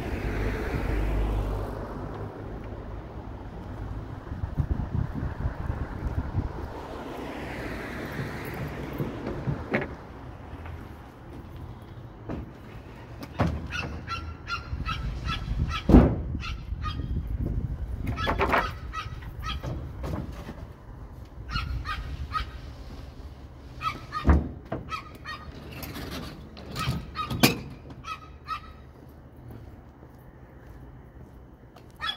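Two-by-four lumber being slid into a pickup bed: wooden knocks, scrapes and short squeaks, with several sharp thuds, the loudest about halfway through. Cars pass in the first several seconds.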